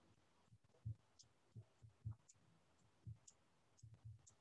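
Near silence: faint room tone with scattered soft taps and small clicks, about half a dozen at irregular intervals.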